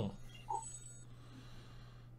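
A quiet pause filled by a faint, steady low hum, with one brief faint blip about half a second in.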